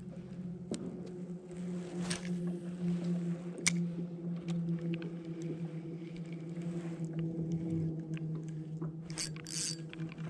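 A steady, even-pitched motor drone, with scattered clicks and taps from a spinning rod and reel being handled.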